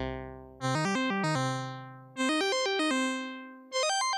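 Monophonic synth lead from a VCV Rack patch, a short-pulse square wave blended with a triangle wave an octave lower, playing three short phrases of quick stepping notes. Each phrase starts loud and fades away, with a touch of reverb on it.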